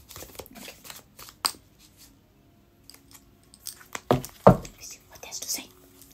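Deck of tarot cards being shuffled by hand: quick papery flicks and rustles, a quieter stretch about two seconds in, then two heavier thumps just after four seconds as the cards knock together, followed by more rustling.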